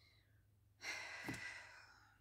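A woman sighs: one breathy exhale that starts a little under a second in and fades away over about a second.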